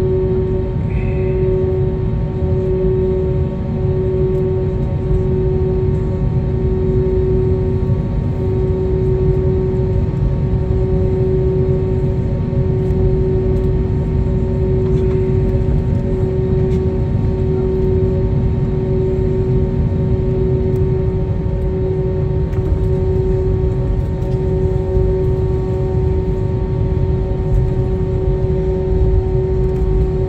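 Steady cabin noise of an Airbus A321neo taxiing on the ground after landing: a low rumble of the engines at idle with several steady hums over it. One of the lower hums stops about two-thirds of the way through.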